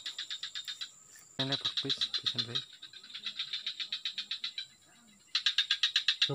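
A chorus of small calling animals in a swamp: an even, rapid train of high chirps, about ten a second, that breaks off briefly twice, over a steady high-pitched whine.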